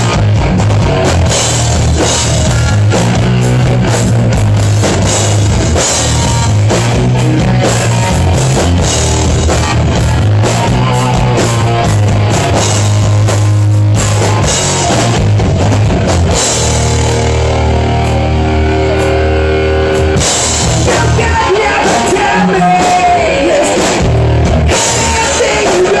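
Live hard rock band playing a song at full volume, with a pounding drum kit, crashing cymbals, heavy bass and distorted electric guitar. About two-thirds of the way through, the beat thins out under a held, ringing chord before the drums come back in.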